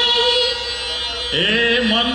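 Live singing with music over a PA system: a long held note, a short dip, then a new sung phrase begins a little past halfway.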